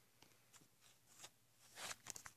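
Mostly near silence with a few faint, short rustles of fur fabric and handling, the loudest just before the end, as a fursuit is being put on.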